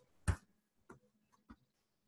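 Hand striking a volleyball once, sharply, followed by two much fainter taps about half a second apart: touches keeping the ball in the air during a one-arm, pokey and handset control drill.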